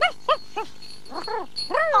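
A small dog yapping in short, high-pitched barks: three in quick succession, then two more about a second later.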